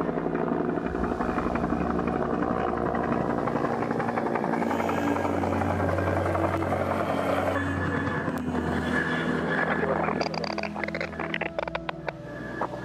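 A steady engine drone holding one pitch throughout.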